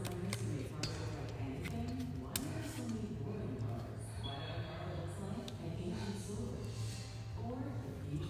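Scattered sharp clicks and clinks of a phone being handled and adjusted in its mount. Under them run indistinct background voices and a steady low hum.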